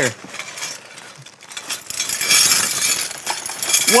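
Small metal shelf hardware (brackets and fittings) clinking and jangling as it is poured out of a plastic bag into cupped hands, with a few light clicks at first and a dense clatter through the second half.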